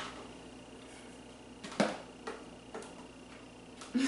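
A few sparse, light clicks and taps from kitchen utensils over quiet room tone; the blender's motor does not run.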